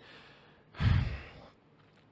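A man's single sigh, one short breath out lasting under a second, about three quarters of a second in.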